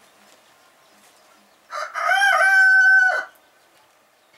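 A rooster crowing once: a loud crow of about a second and a half that rises through a few short notes into one long held note.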